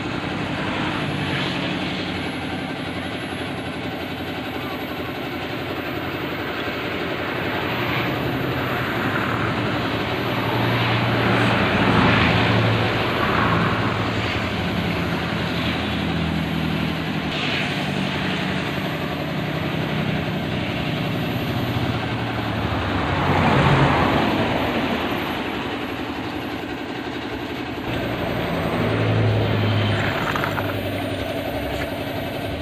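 An engine runs throughout with a low hum that shifts in pitch, swelling louder three times: about 12 seconds in, about 24 seconds in, and near the end.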